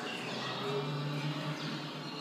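Soundtrack of a projected video installation: birdsong over a low steady hum, with a faint hint of music.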